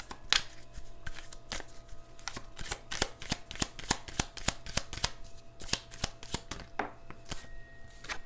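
A deck of oracle cards being shuffled by hand: a quick, irregular run of light card clicks and slaps that thins out near the end.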